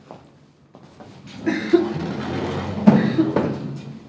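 A chair being dragged and scraped across a wooden stage floor, with a couple of sharp knocks as it is handled and set down.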